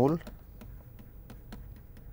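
Stylus tapping and scratching on a tablet-PC screen during handwriting: a string of short, sharp, irregular clicks.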